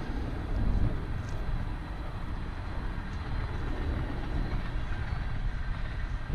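Steady low rumble of road traffic on a wide multi-lane road.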